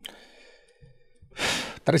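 A man's quick, audible breath drawn close to the microphone about a second and a half in, in a pause mid-sentence.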